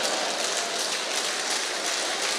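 Audience laughing and clapping after a joke: a steady wash of crowd noise with no single voice standing out.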